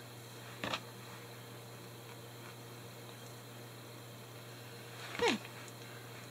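Faint room tone with a steady low hum, broken by one short soft sound under a second in; near the end a woman says "okay".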